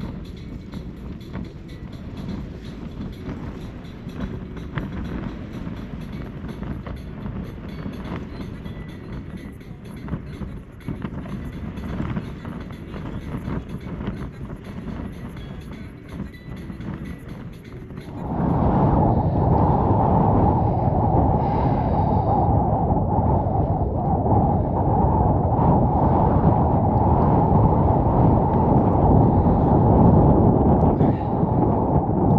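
Wind battering a Hilleberg Soulo BL tent in a gale, the fabric shaking and rattling with rapid ticks over a steady rumble. About two thirds of the way through, it jumps to a louder, deeper roar of wind blowing straight onto the microphone.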